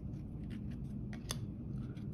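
Trading cards being flipped through by hand, a card slid off the front of the stack with a faint papery rubbing and one sharp snap a little past halfway.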